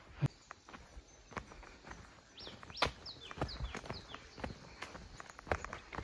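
Footsteps on a dry dirt track, irregular steps. Midway a bird calls a quick run of about six short whistles, each falling in pitch.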